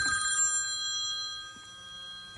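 Pause in talk with several steady high-pitched electronic tones, a whine that carries on under the speech, fading somewhat about halfway through.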